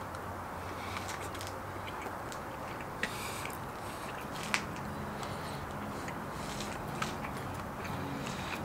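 A man biting into a taco and chewing the mouthful quietly, with a few small clicks over a steady background hiss.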